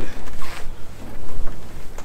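Crab line swishing and scraping through gloved hands as it is coiled off a reel, in a few soft strokes, over a low uneven rumble.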